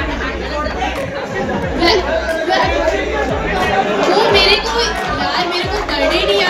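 Voices and chatter of people in a large hall, with a music beat underneath.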